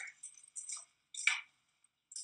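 A utensil clicking and scraping against a pasta pot in three short bursts as bucatini is stirred in the water.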